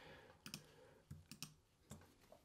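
A few faint, separate clicks of a computer mouse, about five in two seconds.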